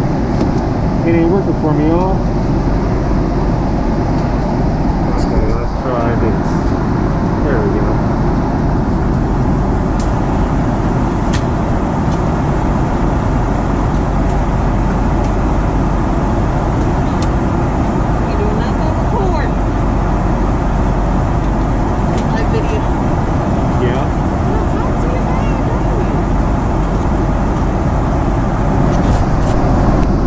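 Steady, loud cabin noise inside a Boeing 777-200ER in flight: a continuous roar of airflow and engines, heaviest in the low range, with no changes.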